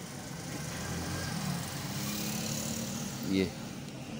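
A steady low drone with a hiss over it, swelling a little in the middle and easing near the end, with no clear clicks or knocks.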